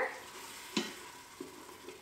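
A splash of chicken stock sizzling faintly in a hot stainless steel Instant Pot insert while a spoon scrapes and stirs the bottom to deglaze the browned bits, with a sharper scrape a little under a second in and a smaller one later.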